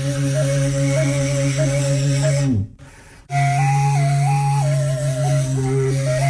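Kazakh sybyzgy, an end-blown shepherd's flute, playing a küi: a melody moving in steps over a steady low drone. About halfway through, the pitch sags and the playing breaks off for under a second, then resumes.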